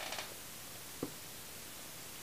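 Quiet room tone with a steady hiss and a single faint click about halfway through.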